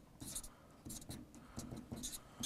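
Marker pen writing on flip-chart paper: a scratchy stroke about a quarter second in, then a quick run of short strokes.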